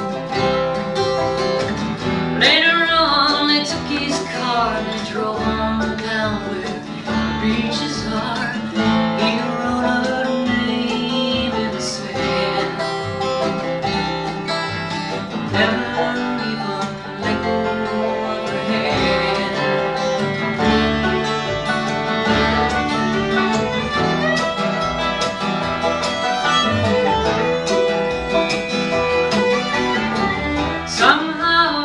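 Live acoustic bluegrass band playing: strummed acoustic guitar, upright bass, fiddle, mandolin and five-string banjo together, steady and continuous.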